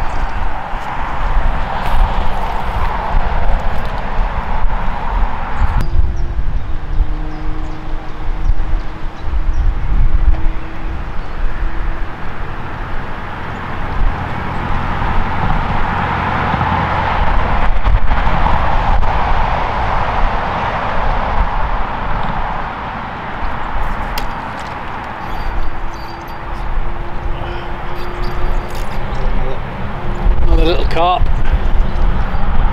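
Road traffic passing, its noise swelling and fading several times, with wind rumbling on the microphone and a faint steady hum that comes and goes twice.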